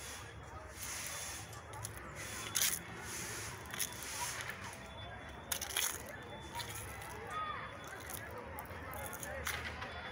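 Distant voices of people out in a park, faint and unclear. Brief crackling and rustling noises come close to the microphone several times, the loudest about two and a half seconds in and again around five and a half seconds in.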